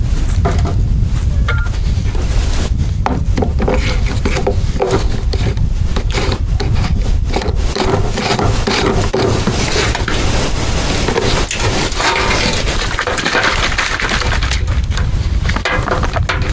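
Clicks, knocks and scraping of a Grinda 4-litre plastic pressure sprayer being handled as its funnel and pump top are worked off and on, over a steady low rumble of wind on the microphone.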